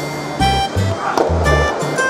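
Background music with a bass line of short notes changing several times a second under held melody tones.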